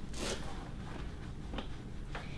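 Cloth wiping leather cleaner onto the leather of a western saddle: soft rubbing, with a short hissing stroke just after the start and a fainter one near the end.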